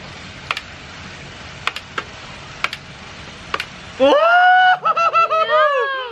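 A few sharp, irregular clicks over a steady hiss, then about four seconds in a loud shout of 'Whoa!' that runs into high, drawn-out laughing shrieks.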